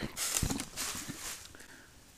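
Rustling and crunching, most likely footsteps on dry leaf litter, with one soft low thump about half a second in, fading away over the second half.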